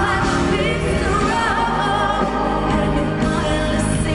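A woman singing a live pop ballad with a full band behind her, her voice bending through a melodic run about a second in.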